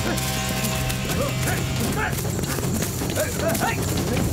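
Film soundtrack: a sustained music score fades out about halfway through, under short cries and gasps and quick scuffling footsteps.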